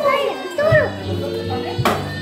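Children shouting and squealing, with background music coming in about half a second in. Near the end a stick hits the piñata once with a sharp whack.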